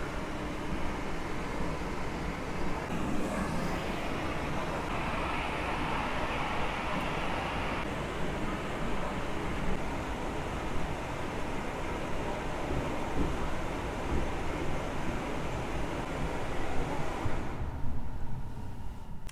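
Tesla Model 3's cabin blower running at maximum for the windshield defrost: a steady, even blowing of air.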